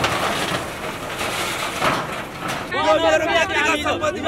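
Escorts Digmax II backhoe loader's diesel engine running as it pulls down corrugated iron sheeting, with a couple of sharp metal knocks. About three seconds in, a man starts speaking loudly over a crowd.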